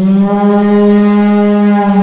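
A single long, low horn-like note that starts abruptly and is held loud and steady at one pitch.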